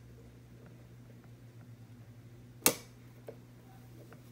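A single sharp click about two and a half seconds in, followed by a much fainter click half a second later, over a low steady hum.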